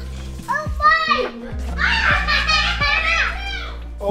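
Excited exclamations from children and adults, high-pitched and broken into short outbursts, over steady low background music.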